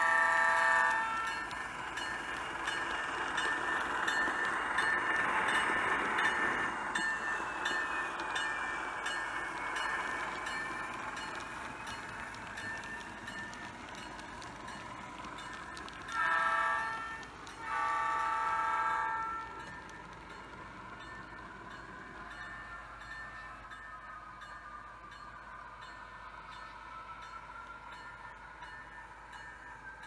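Sound-equipped HO scale model diesel locomotive sounding its horn: a blast at the start, then a short and a longer blast about 16 and 18 seconds in. Between the blasts comes the running noise of the model train rolling along the track, which swells and then fades.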